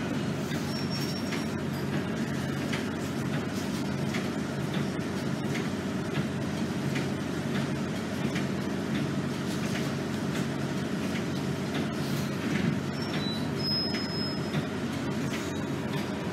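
RTS transit bus engine idling steadily, heard from inside the passenger cabin. A brief high-pitched whistle comes about fourteen seconds in.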